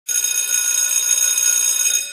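Twin-bell alarm clock ringing steadily, a high-pitched ring that starts suddenly at the very beginning.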